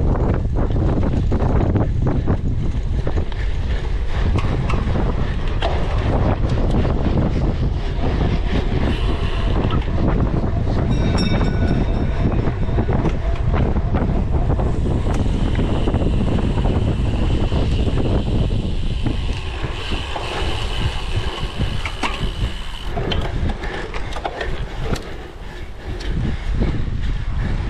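Steady wind rush on the microphone of a cyclocross bike ridden at speed, with frequent clicks and rattles from the bike as it runs over rough ground.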